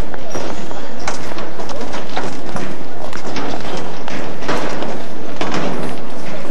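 Irregular clacks and knocks of a procession's footsteps on street paving, over a steady murmur of voices.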